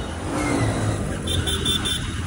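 Motorcycle riding on the road: a steady low engine and road rumble, with a quick run of short high beeps near the end.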